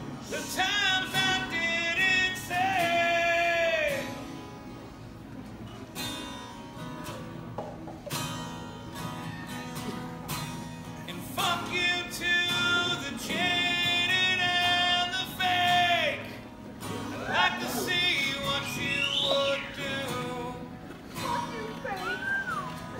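A man singing live with long held notes over strummed acoustic guitar, through a PA. There are two sung phrases and a shorter third one, with guitar alone in the gaps between them.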